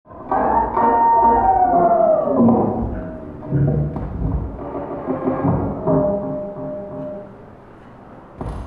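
Live laptop electroacoustic music made in Max/MSP: a sudden entry of resonant ringing tones that slide downward in pitch, low drum-like thuds about four seconds in, then a held tone that fades away near the end.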